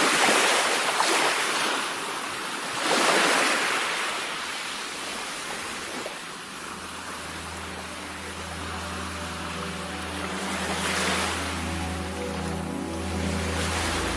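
Surf washing onto a shore, swelling and falling back three times. From about five seconds in, low held musical notes fade in beneath it.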